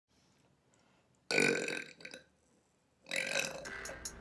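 A woman burping loudly twice, the first about a second and a half in, the second near the end, as music begins.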